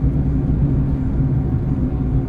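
Steady low hum of a car's engine and road noise heard inside the cabin while driving.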